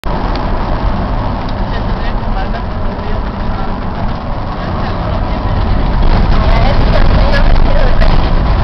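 Road and engine noise heard from inside a moving car's cabin, a steady low rumble that grows louder about six seconds in as the car runs onto a rough, unpaved detour surface. Voices are heard faintly over it.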